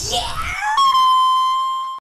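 A high-pitched rock-style scream: a voice slides upward, then from about three quarters of a second in holds one high, steady wailing note that slowly fades.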